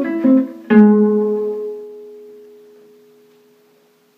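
Gypsy jazz acoustic guitar picked: a few quick notes, then one note struck a little under a second in and left ringing, fading away over about three seconds.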